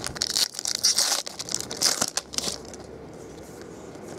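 Foil wrapper of a baseball card pack crinkling and tearing as it is opened by hand, mostly in the first two and a half seconds, then dying down.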